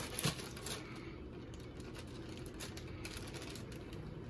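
A plastic zip-top bag being handled and sealed around a ball of playdough: a few short crinkles and clicks, mostly in the first second, then only a low steady room hum.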